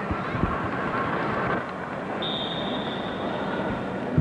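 Steady crowd noise from spectators in an indoor volleyball arena, a continuous wash of chatter, with a steady high-pitched tone coming in about halfway through.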